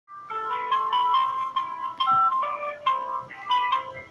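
A simple electronic tune picked out in clear single notes, a few notes a second.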